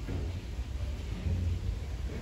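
Wind buffeting the phone's microphone: an uneven low rumble with a faint hiss, swelling a little past the middle.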